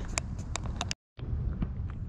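Several sharp, irregular clicks of a ratchet tie-down strap being worked to secure a load, over a low outdoor rumble. The sound cuts out briefly about a second in.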